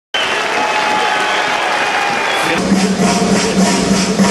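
Audience applauding in an arena. About two and a half seconds in, the sound cuts to a steady low droning tone with a quick, regular pulsing beat over it.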